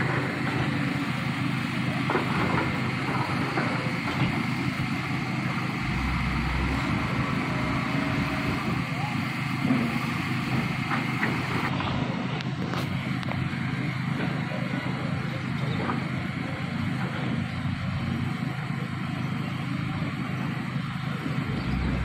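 An engine running steadily: a constant low hum with a faint high whine over it.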